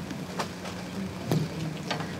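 Quiet room tone with a steady low hum, broken by three faint knocks as a handheld microphone is picked up and handled.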